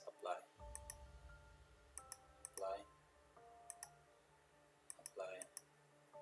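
Computer mouse buttons clicking, about five quick press-and-release double clicks a second or so apart.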